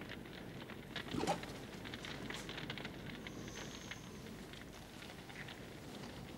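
Faint, soft crackling and pattering of a cooking fire burning under an iron cauldron, with a short murmur from a man about a second in.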